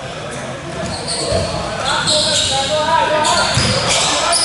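A basketball bouncing on a hardwood gym floor: two dull thuds about two seconds apart, ringing in a large hall. High squeaks, typical of sneakers on the court, come in from about halfway through.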